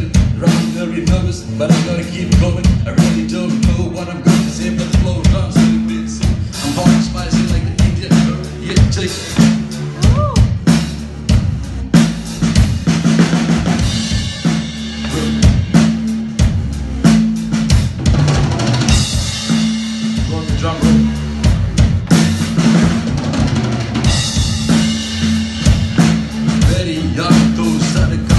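Live band playing an instrumental passage led by the drum kit: a busy kick, snare and rimshot groove over a steady low bass line, with bursts of cymbal wash in the second half.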